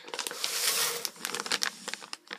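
Rustling and crinkling of packaging as a part sealed in a plastic bag is pulled out of a cardboard box. A dense rustle comes in the first second, followed by scattered light crinkles and clicks.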